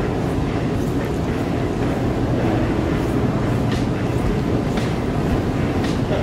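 Steady low rumbling background noise of a busy airport terminal hall, with faint scattered ticks.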